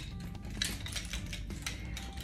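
A few sharp metallic clinks from the metal chain of a pair of nunchucks rattling as they are swung through a wrist roll and caught in the hand, over background music.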